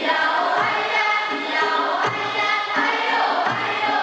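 A group of voices singing a Puyuma (Pinuyumayan) folk song in unison. A low thud keeps time under it about every three quarters of a second.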